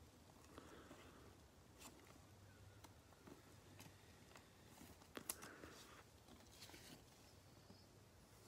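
Near silence, with faint rustling and a few small clicks of gloved hands handling trading cards and clear plastic card sleeves; the loudest is a couple of quick clicks about five seconds in.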